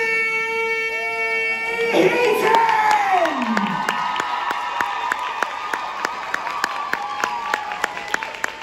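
A man holding one long, drawn-out shout into a microphone, announcer-style, that breaks off into a falling glide about three seconds in. From about two seconds in, an audience cheers and claps over it.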